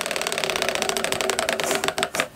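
Tabletop prize wheel spinning, its pointer flapper clicking against the pegs around the rim in a fast, steady run of clicks.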